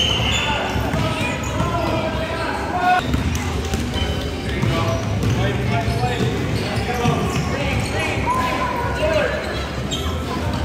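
Basketballs bouncing on a hardwood gym floor, mixed with children's shouts and chatter in a large gym.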